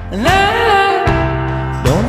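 A song playing: a singing voice slides up into a long held note over steady bass backing, and a new rising phrase starts near the end.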